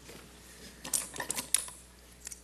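A few light clicks and rattles about a second in, over quiet room tone.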